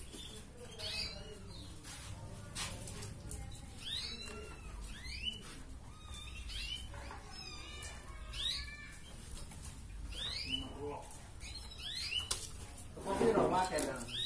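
Red canary singing in a busy run of quick chirps and short downward-sweeping whistles, the rapid 'ngerek' style of a canary in full song. Near the end there is a brief louder burst of a person's voice.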